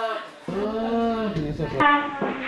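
Several people's voices calling out in long, drawn-out tones, excited greetings of a family reunion, with a sharp click near the end.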